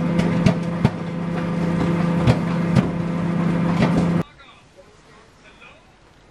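Microwave oven running with a steady electrical hum while a bag of microwave popcorn pops inside, an occasional sharp pop every half second to second. The hum cuts off suddenly about four seconds in, leaving only faint low background sound.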